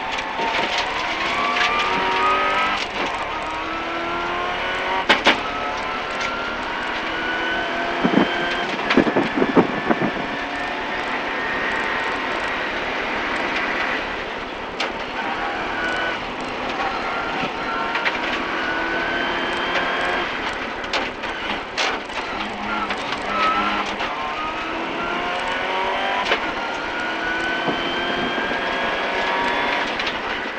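Competition car's engine, heard from inside the cabin, revving hard through the gears on a hillclimb run: its pitch climbs, drops at each gear change and lifts again for the corners. A few sharp knocks come through about a sixth of the way in and again about a third of the way in.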